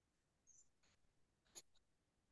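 Near silence, with one faint click about one and a half seconds in.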